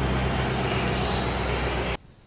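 Steady low rumble with a hiss over it, the vehicle-like background noise of a town street. It cuts off suddenly at the end.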